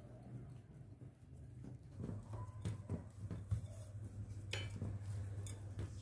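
Gloved hands kneading cookie dough in a glass bowl, firming it with a little added flour: faint soft knocks and rubbing of the dough against the glass, with one clearer knock midway, over a low steady hum.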